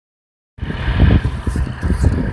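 Diesel engine of a yellow rail maintenance machine on the track, heard as a loud, uneven low rumble that starts about half a second in.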